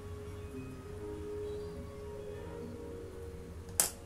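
Soft background music of long held tones with shorter notes moving over them, and a single sharp click near the end.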